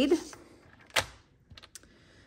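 One sharp click about a second in, then a few faint ticks, as cardstock is set and shifted on a paper trimmer.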